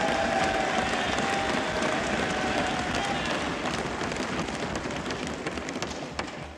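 Applause from assembly members in a large chamber, a dense patter of many hands, with voices calling out over it in the first few seconds. It dies down near the end.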